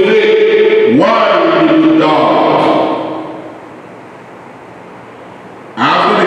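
A man's voice chanting in long, held notes, sliding up into each phrase. One phrase fades out about three seconds in, and the next begins just before the end.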